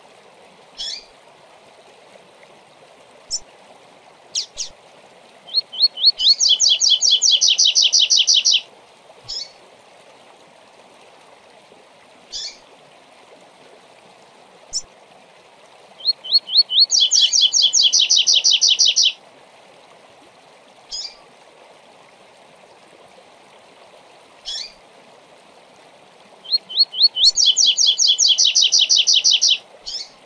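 Double-collared seedeater (coleiro) singing its 'tui tui zel zel zel' song, three times about ten seconds apart. Each phrase is a few separate rising notes running into a fast, even trill of about 2.5 seconds. Single short call notes fall between the phrases.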